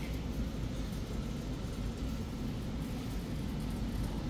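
Steady low rumble of indoor background noise, with no distinct events.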